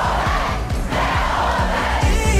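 Pop music with a steady kick-drum beat, mixed with a large concert crowd cheering and shouting.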